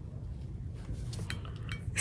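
A couple of faint clinks in the second half, a painting brush knocking against a porcelain paint dish as it is set down, over a low steady room hum.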